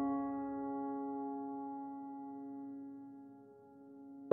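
Calm solo piano music: a single held chord slowly fading away, almost dying out near the end.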